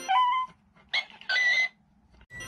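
Shiba Inu whimpering: three short, high-pitched whines with brief silences between them.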